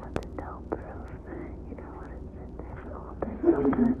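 A man whispering close to the microphone, with a few light clicks.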